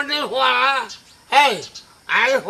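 Speech only: a man talking in dialogue, with a short pause about a second in.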